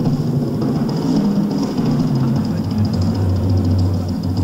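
Drum kit in a live drum solo: continuous fast rolls on the toms, the pitch stepping between drums and settling on a lower drum about halfway through, over a faint steady high ticking.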